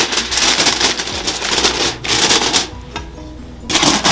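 Aluminium foil crinkling and crackling as it is pressed down over a steamer pot of tamales, then a short clatter near the end as the aluminium lid is set on the pot.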